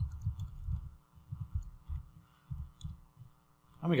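Keyboard typing heard mostly as irregular dull thuds, several a second, carried through the desk to the microphone, with a few faint key clicks. A steady faint electrical hum runs underneath.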